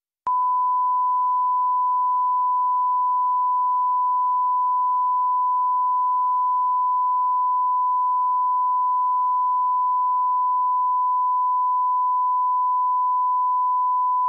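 Broadcast line-up test tone: a single loud, steady, pure pitch that starts abruptly just after the start and holds unchanged, without any variation in level or pitch.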